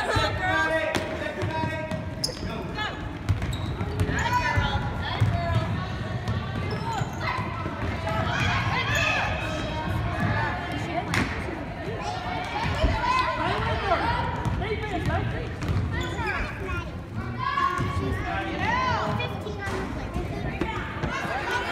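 Basketball game on a hardwood gym court: a ball bouncing, with players and spectators calling out through the play.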